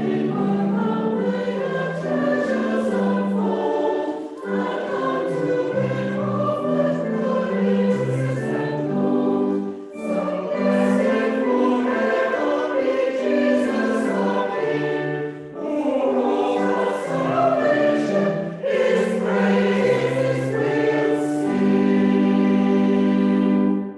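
Church choir of mixed adult and young voices singing a carol in parts, in short phrases with brief breaths between, ending on a long held chord.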